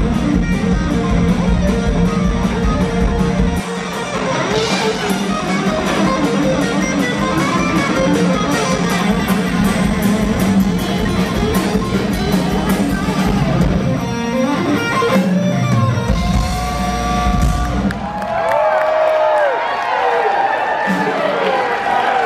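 Live electric guitar solo through a loud amplifier: fast runs and bent, vibrato notes. The band's drums and bass drop out about four seconds in, leaving the guitar mostly alone. A low note is held briefly near the end.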